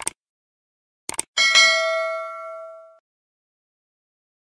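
Notification-bell sound effect: a short click at the start, a quick double click a little after a second in, then a bright bell ding that rings and fades out over about a second and a half.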